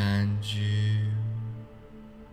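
A man's deep voice intoning a chant-like sound: a short syllable, then one long, steady, low tone that fades out after about a second and a half. It sits over a soft background music drone.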